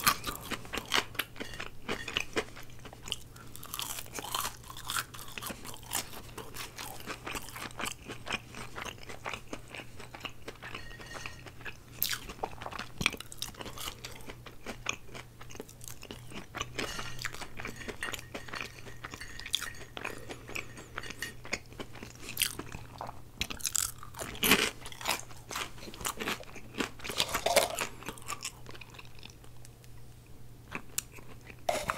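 Curly fries being chewed close to the microphone: many small, sharp crunches in an irregular run, with a few louder bursts of crunching near the end. A steady low hum runs underneath.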